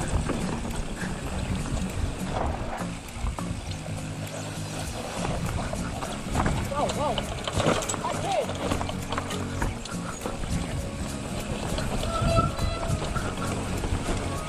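Mountain bike rattling over a bumpy dirt singletrack, with a steady stream of quick clicks from the bike, under background music.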